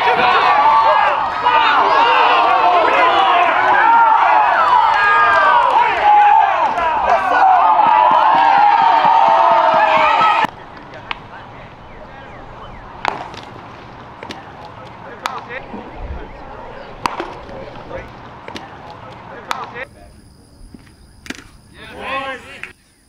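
A crowd of voices cheering and yelling over one another, loud for about ten seconds, then cut off abruptly. After that comes a quiet outdoor background with four sharp pops about two seconds apart: a baseball smacking into a catcher's mitt.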